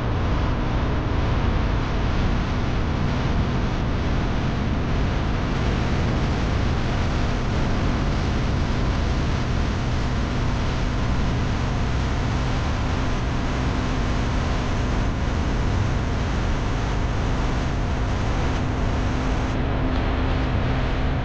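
Steady road noise from a vehicle driving along: a continuous low rumble of tyres and engine with no sudden events.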